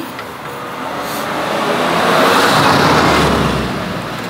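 A car passing by on a nearby road: tyre and engine noise that swells to a peak two to three seconds in, then fades.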